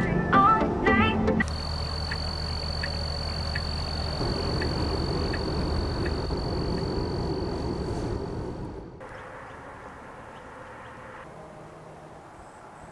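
Guitar-like music plays briefly, then gives way to the steady drone of a car driving: a low rumble with a thin, steady high whine. The drone cuts off abruptly about nine seconds in, leaving a quiet, even outdoor background.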